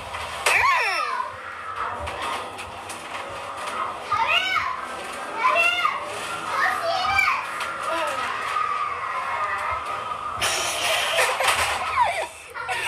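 Children's voices from the compilation clips: a series of short high cries and shrieks that rise and fall in pitch, then a burst of noisy commotion near the end.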